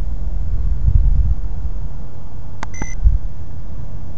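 Low rumbling noise on the microphone, swelling about a second in, typical of wind or handling of a camcorder. Past halfway there is a click, then a short electronic beep.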